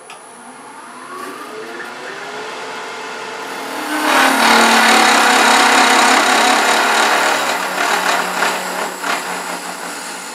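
Wood lathe running with a rising whine over the first few seconds, then a turning tool cutting a tenon into the spinning wood blank, a loud rasping that is strongest from about four to eight seconds in and eases off near the end.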